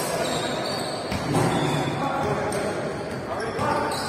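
Basketballs bouncing on a hardwood gym floor during a practice drill, a series of short thuds, with players' voices calling out in the large hall.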